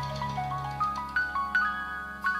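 Live jazz-rock band music from a 1977 concert recording: a quick run of single melodic notes climbing in pitch, then a few sharper, louder struck notes over a held low tone.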